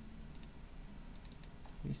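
A few faint, scattered clicks of a computer mouse and keyboard over a low steady hum.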